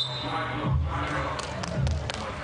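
A referee's whistle dies away at the start, then background voices with two dull thuds about a second apart and a few sharp clicks.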